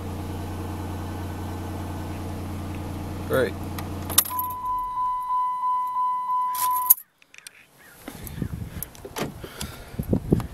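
2005 Dodge Magnum SXT's 3.5-litre V6 idling steadily, then switched off about four seconds in. Right after, the car's electronic warning chime sounds at about three pulses a second for close to three seconds, followed by clicks and rustling near the end.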